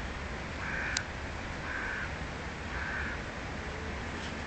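A bird gives three short, harsh calls, evenly spaced about a second apart, over a steady low rumble. A single sharp click comes about a second in.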